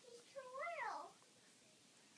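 A single short high-pitched vocal cry that rises and then falls in pitch, lasting about a second.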